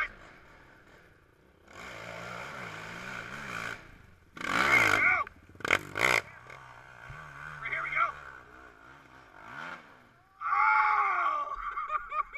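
Off-road engine revving on the hill while spectators shout and yell. Two sharp knocks come about six seconds in.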